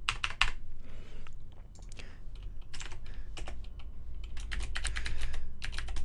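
Typing on a computer keyboard: irregular bursts of keystrokes, with a short pause about half a second in before the typing resumes and runs on.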